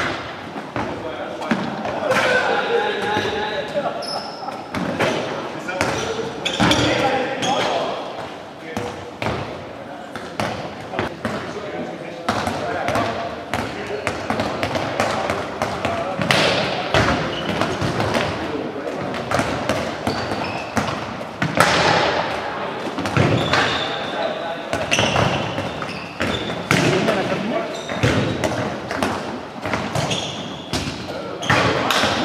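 Handballs repeatedly bouncing and thudding on a wooden sports-hall floor as players dribble, pass and shoot, with indistinct shouts and chatter from the players ringing in the large hall.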